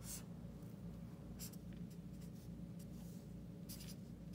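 Marker writing on paper in a few short strokes, faint, over a low steady hum.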